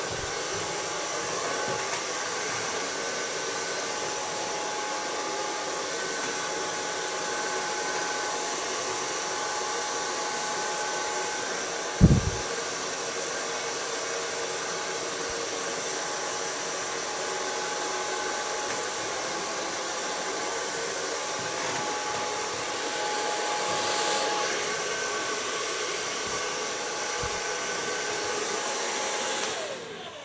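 Handheld hair dryer running steadily while blow-drying short hair, a constant blowing noise with a faint steady whine in it. A single brief thump about twelve seconds in, and the dryer cuts off near the end.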